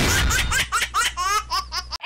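TV show logo sting: a sudden loud whoosh and deep bass hit, followed by a rapid run of recorded 'ha-ha' laughter over a held low rumble, all cutting off sharply at the end.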